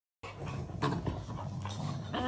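Rottweilers play-fighting, a puppy mouthing an adult dog's head: low, steady growling with a few short, sharper sounds.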